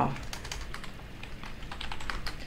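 Computer keyboard being typed on quickly, a rapid run of key clicks, fast enough that the word being typed comes out misspelled.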